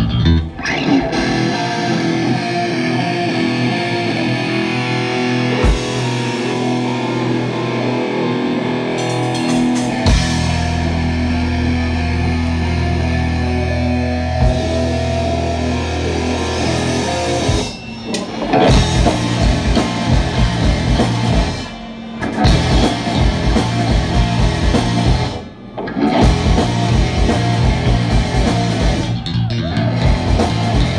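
Live heavy metal band playing an instrumental passage: distorted electric guitars and bass ring out long sustained chords over a held low note. About two-thirds of the way in, the drum kit and a fast chugging riff come in, broken by a few brief stops.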